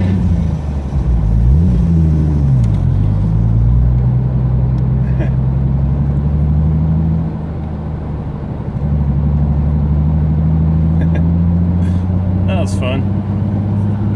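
Single-turbo RB26 straight-six of a Nissan Skyline GTR, heard from inside the cabin, driving off. In the first few seconds it revs up and drops back twice through gear changes. After that it pulls at a steady note, easing off briefly about halfway through.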